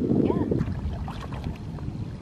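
Wind rumbling on the microphone, dropping away about half a second in to quieter water sounds: soft splashes and drips from a kayak paddle dipping into the lake beside an inflatable kayak.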